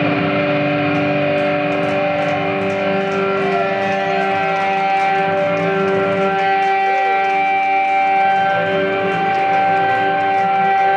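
Electric guitar feedback drone left sounding through the stage amplifiers and effects: several steady, held tones, with a few slow pitch glides about halfway through.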